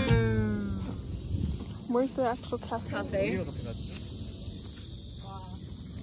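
Background guitar music ending right at the start and dying away within about a second, then outdoor ambience with a steady faint hiss and a few short snatches of indistinct talking about two to three and a half seconds in and again briefly near five seconds.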